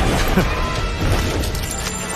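Background film score with several sharp crash and impact sound effects layered over it.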